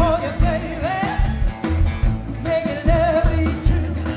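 Live rockabilly band: a man singing lead over electric guitar and upright bass, with a steady beat. Two sung phrases, each ending on a held note with a wavering vibrato.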